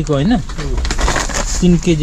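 A man's voice talking, with a brief crinkle of a plastic detergent bag being squeezed about a second in.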